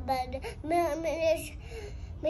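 A young girl's voice in a drawn-out, sing-song utterance without clear words, holding one pitch for most of a second before trailing off.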